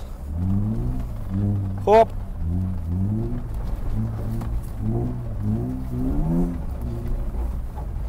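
BMW E36's M52 inline-six engine heard from inside the cabin, its revs rising and falling again and again, about one to two times a second, over a steady low rumble as the car sets off across snow.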